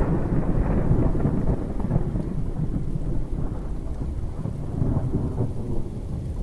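Thunder rumbling over rain, a steady low rumble that eases off a little about halfway through.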